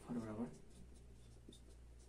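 Marker pen writing on a whiteboard: faint scratching strokes as a formula is written out, with a short voiced sound from a man near the start.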